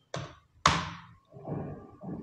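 Handling noise: a few close knocks and taps, the loudest a sharp knock about two-thirds of a second in that dies away quickly, followed by softer rustling and bumping.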